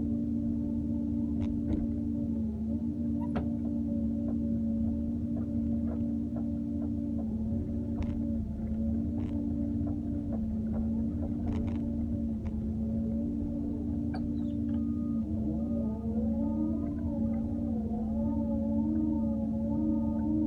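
Doosan excavator heard from inside its cab: a steady engine and hydraulic pump drone that dips briefly each time the controls are worked, with a few light clicks. From about 15 seconds in, a whining tone rises and falls in pitch as the boom and bucket move.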